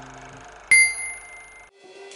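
A single bright bell-like ding about two-thirds of a second in, ringing for about a second before cutting off suddenly. Before it, a chord fades out.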